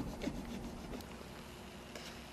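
A few rasping strokes of drywall being cut or scraped open, dying away within the first half second, then a single sharp click about a second in.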